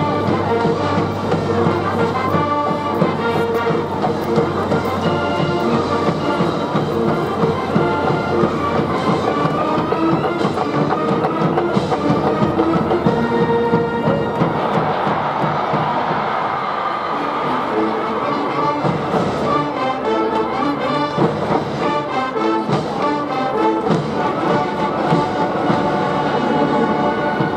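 A large high-school brass band (trumpets, trombones and other brass) playing a loud cheering tune without a break.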